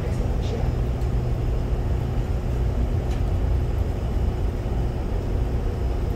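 Steady low room rumble with no other sound standing out.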